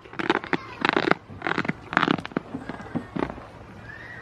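Goats nosing and rubbing against the camera, making a run of short rustling bursts right at the microphone, about five in three seconds.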